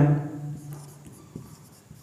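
Marker pen writing on a whiteboard: a few short, faint strokes as a word is written.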